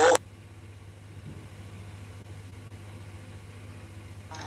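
A steady low hum with a faint hiss underneath. At the very start there is a brief loud sound that falls in pitch and cuts off.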